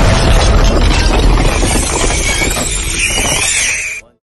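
Explosion sound effect: loud rumbling and crashing of debris after the blast, easing off slightly, with a wavering high whine near the end before it cuts off suddenly.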